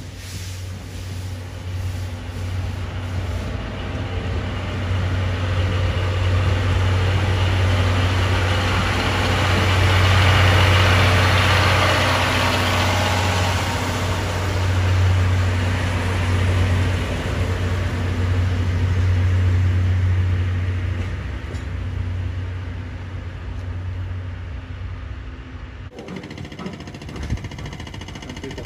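Diesel locomotive engine running with a deep steady drone as it moves a train of passenger coaches past, with the rolling noise of the wheels on the rails; it swells to its loudest about ten seconds in, eases off, and drops away abruptly near the end.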